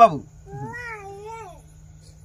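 One drawn-out, high-pitched vocal call, about a second long, wavering up and down in pitch, following a short spoken word.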